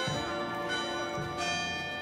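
Bells ringing: a few strikes, each ringing on and overlapping the next.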